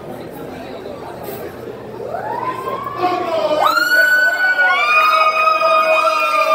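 Crowd chatter, then about two seconds in a siren sound rises and holds steady, several siren tones layered over one another and growing louder.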